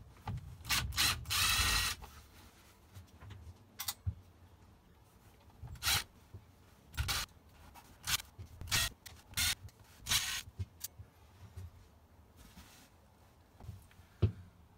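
Cordless drill/driver run in short bursts, backing out the small screws that hold the pop top tent's lower track, with clicks and rattles between the bursts. The longest run comes about a second in.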